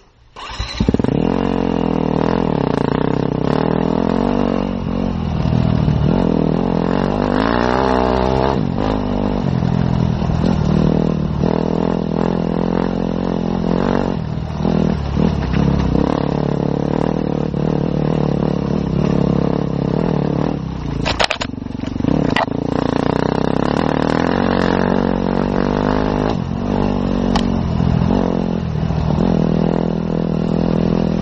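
Enduro motorcycle engine heard close up from the bike, running hard and revving up and down as it rides a rough dirt trail. The sound cuts in abruptly about a second in, and there is a sharp knock about two-thirds of the way through.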